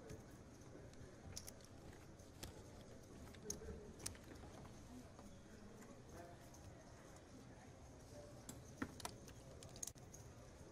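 Near silence: quiet room tone with a handful of faint, scattered clicks, as of cards and chips being handled on a poker table.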